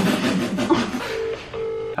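Laughter in the first second, then a phone's ringback tone through its loudspeaker: one British-style double ring, two short bursts of a steady low tone with a brief gap, as the outgoing call rings.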